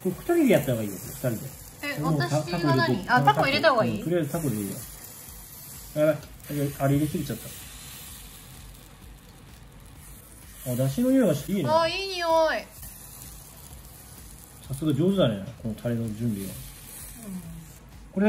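Batter sizzling with a steady hiss as it is ladled into the hollows of a hot takoyaki plate, under spells of two people talking.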